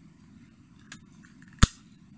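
Handheld one-hole paper punch punching through mirror-polished metal foil: a faint click about a second in, then one sharp, loud snap a little past halfway as the punch is pressed.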